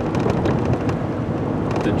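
Steady road and tyre noise with engine rumble inside a Ford F-150 pickup's cab at highway speed.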